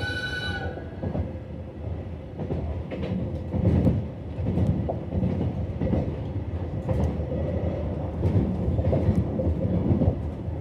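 A JR Hokkaido 735 series electric train running, heard from inside the car: a steady rumble of wheels on rail with irregular sharp clicks from the track. A short high ringing tone fades out in the first half second.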